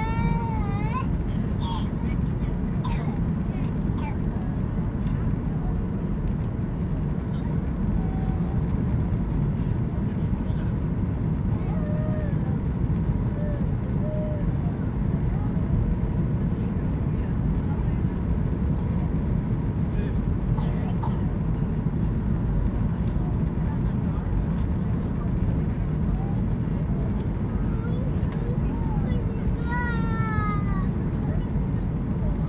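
Steady low roar of a Boeing 737-800's engines and airflow, heard inside the passenger cabin on final approach. A baby's short high cries come through at the start and again near the end.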